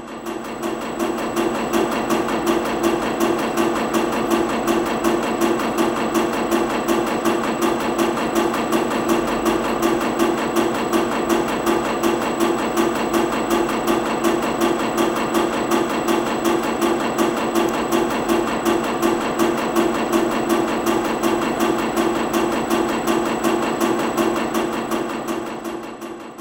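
Giandesin AV1 automatic coil-winding machine running as it winds flat copper strip, a steady mechanical hum with a regular beat about three times a second. The sound fades in at the start and fades out near the end.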